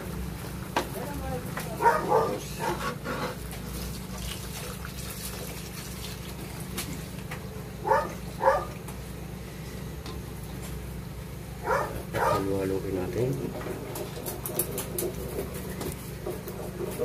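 Pig's blood being poured into a wok of simmering pork and stirred with a metal ladle, with a few light clicks near the end, over a steady low hum. Short bursts of voice come three times.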